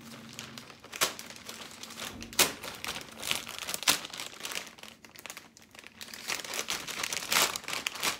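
Takeaway food packaging crinkling and rustling as it is unwrapped and handled, in irregular bursts with a few sharper crackles.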